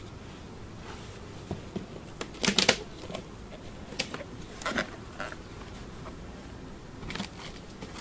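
Wooden beehive boxes and a metal hive tool knocking and clicking as the boxes are lifted and set down on the hive, with a cluster of knocks about two and a half seconds in the loudest. A faint steady hum of honey bees lies under them.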